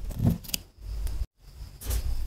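Fingertips rubbing colored sand onto the paper of a sand picture in two short dry scrapes. After a brief drop-out, a plastic spoon scrapes in a tub of sand.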